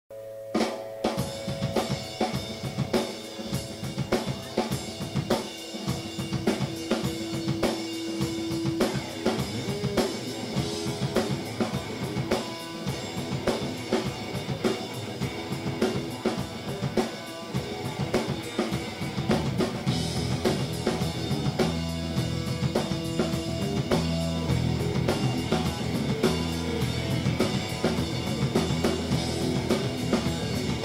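Live band, led by a drum kit playing a steady groove on snare, kick drum and hi-hat, with scattered electric guitar notes over it. From about 20 seconds in, bass and guitar come in more fully and the low end gets heavier.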